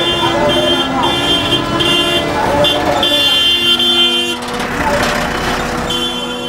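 Vehicle horns honking repeatedly in busy street traffic, in a string of short blasts and longer held toots, mixed with men's voices.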